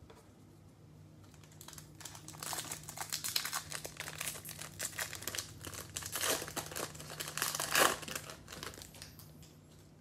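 Foil wrapper of a Bowman baseball card pack crinkling as it is handled and opened by hand. The dense crackle starts about two seconds in, is loudest near the end, then dies down.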